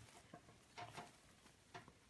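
Near silence, with a few faint, soft rustles and small clicks of burlap and ribbon being handled as a bow is shaped by hand.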